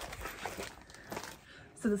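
Soft crinkling and rustling of a clear vinyl zippered project bag and a paper pattern being handled as the pattern is taken out. A woman starts speaking near the end.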